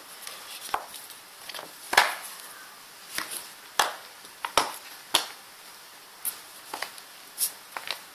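Wooden-mounted rubber stamps being picked up and stacked by hand, clacking against one another in a string of sharp knocks. The knocks come every half-second to a second, the loudest about two seconds in.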